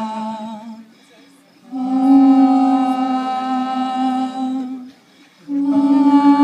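Several voices humming long held notes together, in a slow wordless phrase: one note fades out about a second in, a higher one holds for about three seconds, and after a short pause a slightly higher note begins near the end.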